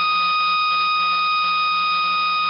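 Heart-monitor flatline sound effect: one continuous electronic beep held steady at an even pitch, with a hiss beneath it.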